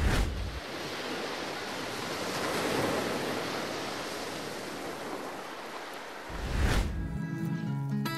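Sea surf: a wash of wave noise that swells and fades. Near the end comes a low thump, and music begins.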